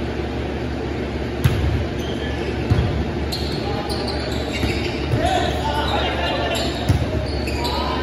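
Volleyball being struck during a rally, echoing in a large gym hall: a sharp thump about a second and a half in, another just over a second later, and a third near the end, with players calling out in between.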